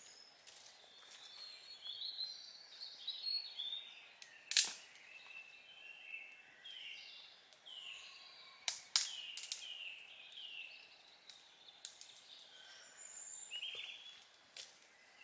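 Songbirds singing in woodland: many short, varied whistled phrases. A few sharp cracks cut in, the loudest about four and a half seconds in and a quick cluster around nine seconds in.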